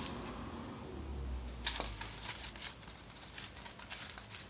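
Handling noise: light rustling and a scatter of faint clicks as a clear plastic bag is moved about, with a brief low hum about a second in.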